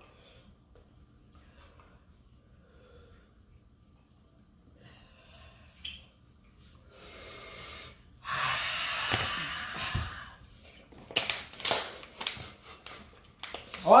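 A person breathing hard through the mouth with a loud, hissing rush of air lasting about two seconds, as from the burn of a Carolina Reaper chili wing, followed by a few sharp clicks or knocks.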